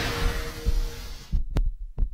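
Soundtrack sound design: low thuds under a hiss that fades out about one and a half seconds in, followed by a single sharp click.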